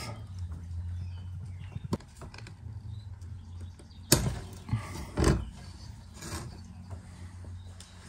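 Tongue-and-groove pliers wrenching at the bonnet of an old stop-and-waste valve: a few sharp metal clicks and knocks, the loudest about four and five seconds in. A low steady hum sits under it.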